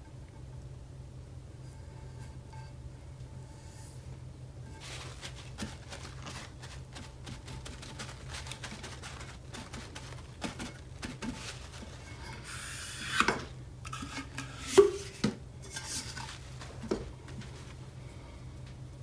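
Paper towel rubbing and dabbing over a freshly applied water slide decal on a tumbler, pressing out the water, with many small scrapes and clicks. A few louder knocks late on as the cup is handled, over a steady low hum.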